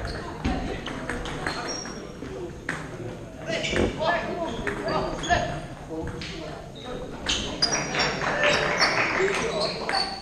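Table tennis ball clicking off rackets and the table in a rally, with hits coming closer together in the second half, over a hall's background chatter of voices.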